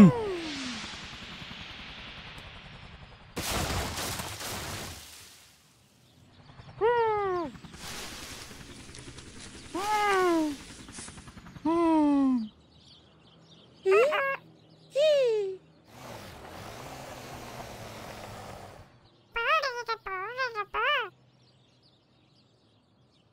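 Cartoon sound effects and a character's wordless cries: a falling whoosh, a noisy crash-like burst about three and a half seconds in, then a series of short whimpering cries that slide down in pitch, ending with a quick run of wavering cries.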